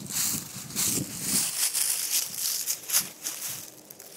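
Dry fallen leaves rustling and crunching underfoot in irregular bursts, with a sharp click about three seconds in.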